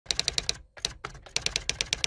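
Typing sound effect: a quick, irregular run of key clicks, with a brief pause a little over half a second in before the clicking resumes.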